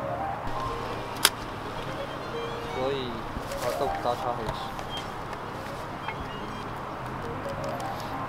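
Medium-format camera being handled after a long exposure: a sharp click about a second in, then scraping and handling noises as the metal dark slide is slid back into the film back, over a low steady street hum.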